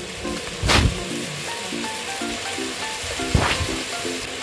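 Light instrumental background music with a bouncing melodic tune, over a pan of potatoes and sprouted chickpeas sizzling. Two sharp knocks cut through, one under a second in and one near the end.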